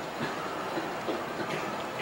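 Steady hiss and hum of an old videotape recording's background, with no clear event.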